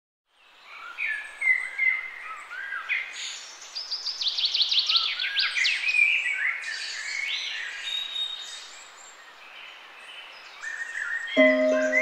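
Songbirds singing, with many quick chirps, trills and rising calls overlapping. About a second before the end, soft string and keyboard music comes in under them.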